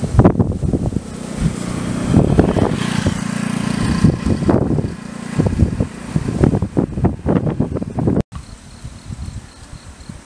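Wind buffeting the microphone in loud irregular gusts, over a low steady engine hum that fades after about four seconds. After an abrupt cut near the end it turns quieter, with a faint pulsing insect trill.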